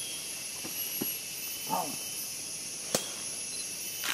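Steady high-pitched rainforest insect drone, with a single short vocal sound a little under two seconds in and a sharp click near three seconds in.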